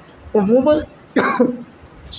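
A man's voice making two short vocal sounds, each about half a second long, with a brief pause between them; the recogniser took them for no words.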